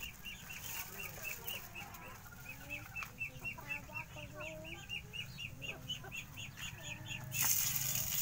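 Chickens clucking, with a steady run of short high chirps about four a second. Near the end a sudden frying sizzle starts as dried fish goes into hot oil in a wok over a wood fire.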